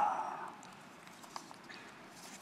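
A man's voice dying away at the end of a spoken sentence, then quiet room tone with a couple of faint short clicks.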